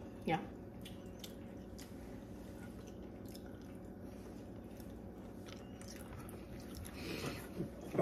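A person biting into and chewing a frosted donut: faint, scattered wet mouth clicks over a steady low hum in the room, with a short breathy burst near the end.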